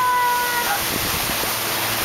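Wind buffeting the microphone and water rushing past a motorboat under way, a steady loud noise. A brief, high, held tone sounds at the start and stops under a second in.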